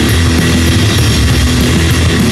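Loud, lo-fi garage punk rock recording with distorted electric guitars, the sound dense and steady throughout.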